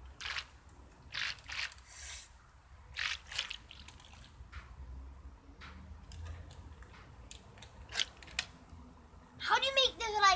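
Water in a paddling pool splashing and dripping in short, scattered bursts over a faint low rumble; a child starts speaking near the end.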